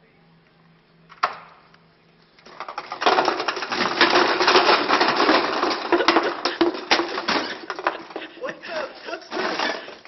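A wall of stacked paper drink cups collapsing: after a single sharp click, a long loud run of many light, overlapping clattering impacts as the cups tumble to the floor, thinning out near the end.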